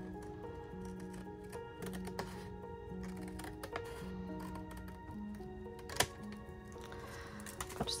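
Scissors cutting through cardstock, a series of small crisp clicks and snips with one sharper click about six seconds in, under soft background music with long held notes.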